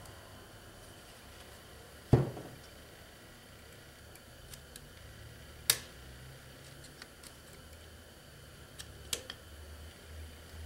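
Piston ring expander pliers and a piston ring being handled on a piston: scattered small metallic clicks, a dull knock about two seconds in and a sharp click just before six seconds, over a faint low hum.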